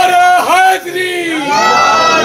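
A crowd of men calling out together in response to recited poetry, their voices loud and rising and falling.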